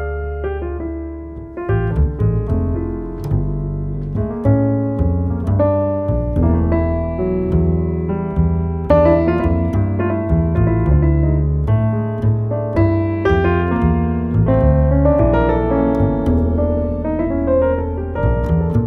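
Grand piano and upright bass playing a slow jazz duo piece: the piano carries the chords and melody while the bass moves in low notes underneath.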